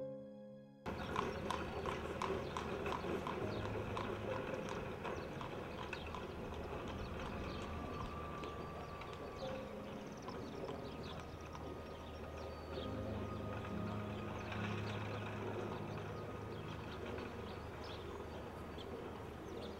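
Hooves of a horse pulling a two-wheeled cart clip-clopping at a steady walk on a paved street. The clopping starts suddenly about a second in.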